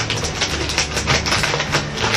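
Plastic candy packaging crinkling and crackling as it is handled, a rapid irregular run of crackles.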